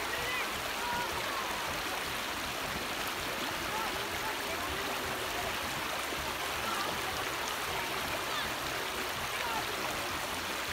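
Steady rush of river water as children wade and splash in the shallows around inflatable tubes, with faint children's voices.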